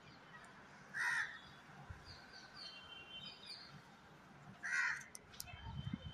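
House crow cawing, two short calls about a second in and just before five seconds, with a few light clicks near the end as its beak picks at the plastic tub.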